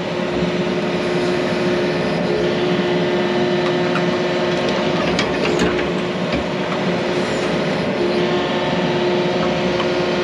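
Yanmar mini excavator's diesel engine and hydraulics running steadily as the bucket digs and places backfill dirt, with a few short knocks from the bucket and linkage.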